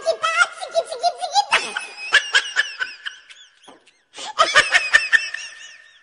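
High-pitched laughter in quick repeated bursts, breaking off for a moment a little past the middle and then starting up again.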